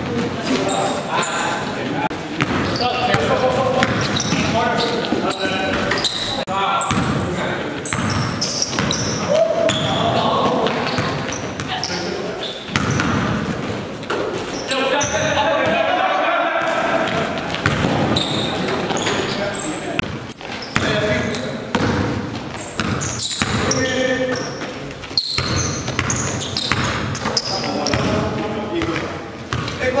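Basketball bouncing on a gym floor during play, amid players' indistinct shouts and calls, echoing in a large gymnasium.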